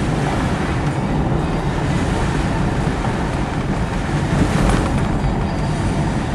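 Steady road noise inside a moving car's cabin: a constant low rumble of tyres on the pavement and the engine running.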